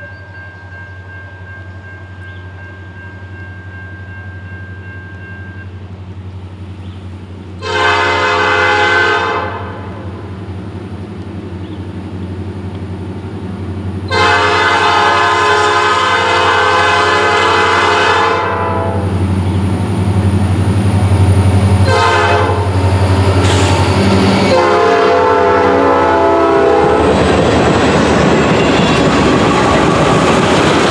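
Norfolk Southern EMD SD40-2 diesel locomotive approaching, its 16-cylinder two-stroke engine drone growing louder, sounding its multi-chime air horn in four blasts: long, long, short, long, the standard grade-crossing signal. Near the end the locomotive passes close by and freight cars follow with steady wheel and rail noise.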